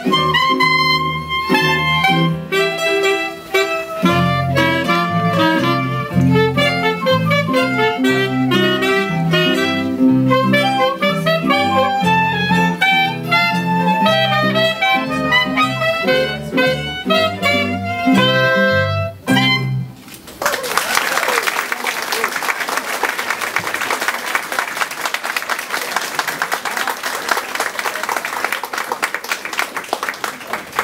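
A small amateur ensemble of clarinets, mandolins, violin, guitar and keyboard playing a lively piece that ends about two-thirds of the way through, followed by steady audience applause.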